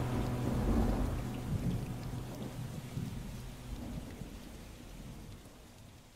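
Rain with rolling thunder, mixed in at the close of a ballad track, fading out steadily. A last low held note of the music dies away in the first couple of seconds.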